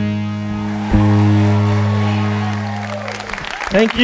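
A live band holds its final chord, a steady low ringing tone with a struck accent about a second in, which stops shortly before the end. Audience applause rises as the music ends.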